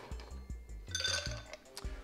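Ice cubes clinking against a glass cocktail shaker: one sharp clink with a high ringing tone about half a second in and a lighter click near the end, over background music with a steady bass beat.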